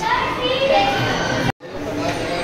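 Children's voices and chatter in a large hall, several talking at once, cut off abruptly about one and a half seconds in by a brief dropout.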